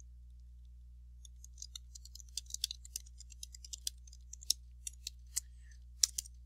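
Typing on a computer keyboard: a run of quick, uneven key clicks starting about a second in and going on until near the end, over a low steady electrical hum.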